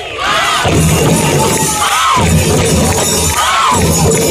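Crowd cheering and shouting over live folk drumming that kicks in with a steady beat under a second in. Loud rising-and-falling calls recur about every second and a half.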